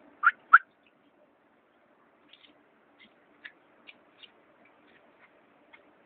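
Terns calling overhead: two loud short calls at the start, then a scattering of fainter, shorter calls.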